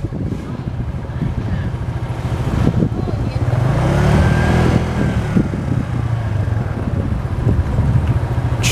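Small motorcycle engine running while riding along a street, its pitch rising and falling slightly about halfway through.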